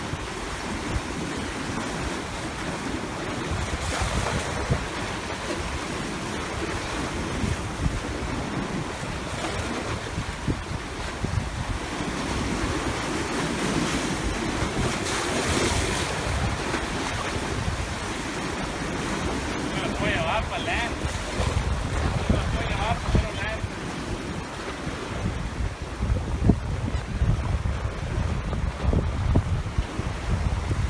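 Surf washing against jetty rocks, with wind buffeting the phone's microphone, the rumbling gusts growing stronger near the end.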